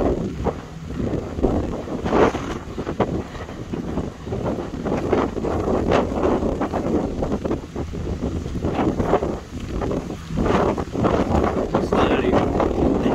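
Wind buffeting the phone's microphone in gusts, a rumbling noise that swells and dips.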